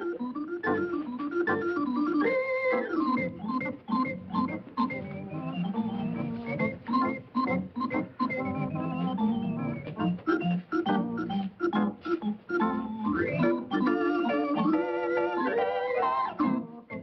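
Organ music accompanying the film: a bouncy tune of short, detached notes and chords, with quick rising and falling runs.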